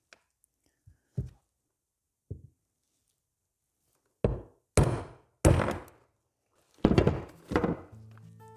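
Hammer striking a seal driver to press a new radial shaft seal into the steel cover of a Danfoss hydraulic drive motor. There are a few faint taps first, then about five heavy knocks from about four seconds in.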